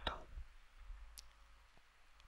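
Near silence: quiet room tone in a pause between a man's sentences, with one faint click a little over a second in.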